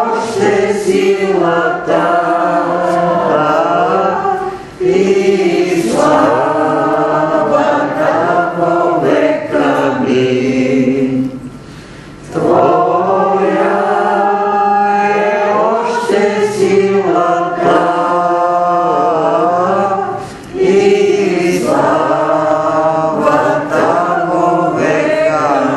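A group of voices singing a worship song in long phrases, with short breaths between lines: about a second in, a longer break near the middle, and again near the end.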